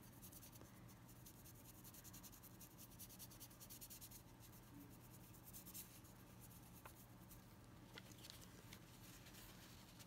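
Very faint scratching of a paintbrush stroking paint along a stick, with a few light ticks in the second half and a low steady hum beneath.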